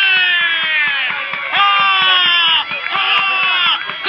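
A person's long drawn-out high-pitched shouts, two or three in a row, each sliding slowly down in pitch.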